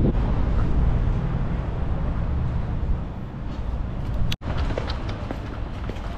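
Wind rumbling on the microphone, with road traffic behind it. About four seconds in it cuts off abruptly to a quieter indoor shop background with a few faint clicks.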